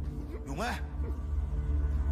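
Low, steady droning film score with one short vocal sound from a man, rising then falling in pitch, about half a second in.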